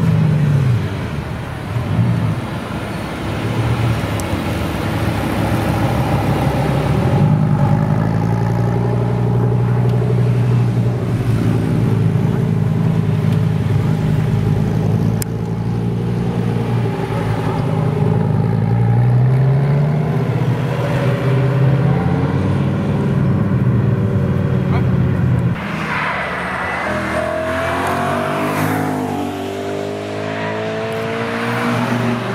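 Dodge Viper V10 running at low revs with a steady rumble as it pulls away slowly, the pitch dropping as it passes. After a cut near the end, another car accelerates with steadily rising revs.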